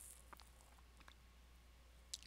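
Near silence: room tone with a faint low hum and a couple of faint clicks.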